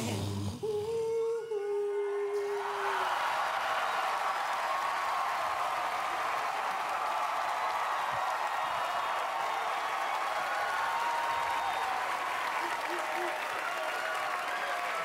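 An a cappella group's last sung note is held for about two seconds. Then a studio audience claps and cheers, continuing steadily with scattered whoops.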